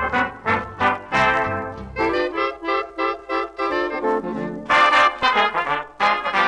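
1930s swing dance band playing an instrumental passage, with the brass leading. Short notes give way to longer held notes in the middle, and a brighter run of notes comes near the end.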